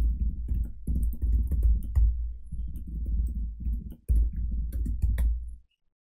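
Fast typing on a computer keyboard: a run of clicks over deep key thuds, with a brief pause about four seconds in, stopping shortly before the end.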